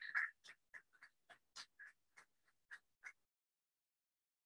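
Faint, sparse hand clapping from a small audience, about four claps a second, thinning out and stopping after about three seconds: applause at the end of a talk.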